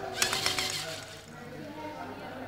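A quick run of sharp plastic clicks and rattles, lasting about a second, as a LEGO Mindstorms NXT robot's arm swings and knocks against the parts beside it. Voices chatter underneath.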